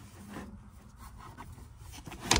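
Faint handling sounds: items rubbing and lightly knocking as they are set into a plastic basket shelf.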